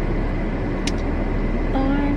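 Steady low hum and hiss of a car's cabin, with one brief click about a second in.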